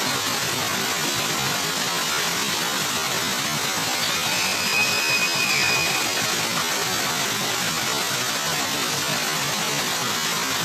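Many small fountain jets spouting and splashing into a shallow pool: a steady rushing hiss of water. A faint high whistle-like tone rises over it for a couple of seconds around the middle.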